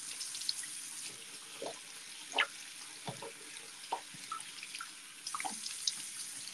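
Bathroom sink tap running, with short, irregular splashes as water is cupped and splashed onto the face to rinse off facial cleanser.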